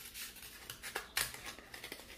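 Scissors cutting through a cardboard toilet paper roll: about five separate snips, the sharpest a little after a second in.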